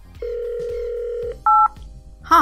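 Telephone dial tone, a steady hum for about a second, then one short, louder touch-tone keypad beep made of two tones sounding together.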